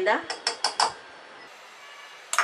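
Metal measuring spoon clinking against a bowl as a spoonful of flour is tipped in: about four quick clicks in the first second, then quiet.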